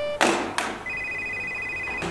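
Two sharp clicks, then a telephone ringing with a steady electronic two-tone ring from about a second in.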